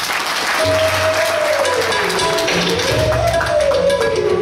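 Live Hindustani classical music: a bansuri flute note slides slowly down and back up over tabla and pakhawaj drum strokes, with the audience applauding.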